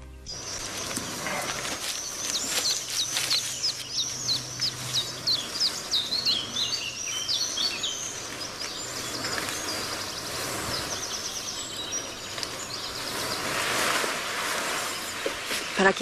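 Small birds chirping: a quick run of high, falling chirps over the first half, then a short fast trill, over a steady outdoor hiss.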